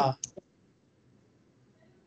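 The end of a spoken word, then one short sharp click a moment later and near silence for the rest.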